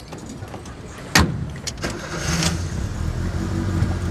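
A car door shuts with a sharp thud about a second in. Then a car engine starts and runs with a steady low hum.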